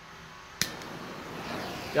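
Handheld gas torch lit with a sharp click about half a second in, followed by the steady hiss of its flame.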